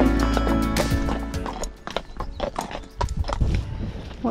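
Background music fades out over the first second and a half, then horses' hooves clip-clop on a tarmac lane at a walk.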